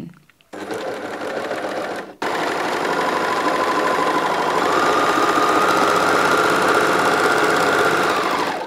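Bernina 1150MDA overlocker (serger) sewing a rolled hem on a soft cotton test strip: a short run of about a second and a half, a brief stop, then a longer steady run whose whine rises a little in pitch as it speeds up.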